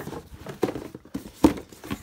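Cardboard shoe boxes being handled and shifted on a shelf: a series of light knocks and scrapes, the loudest about a second and a half in.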